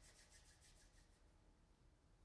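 Faint rubbing of hands together: a quick run of dry, hissy strokes, about eight a second, that stops a little over a second in, leaving near silence.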